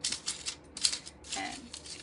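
Metal costume jewelry clinking and rattling as pieces are picked up and handled: a dense run of small clicks with one sharp click a little before the middle.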